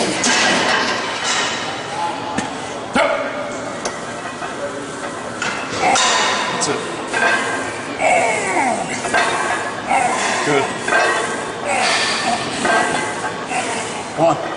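Voices through a heavy barbell bench-press set: a spotter's shouted urging and the lifter's strained vocal effort, some sounds sliding down in pitch. A few short metallic clinks of the bar or plates come in the first seconds.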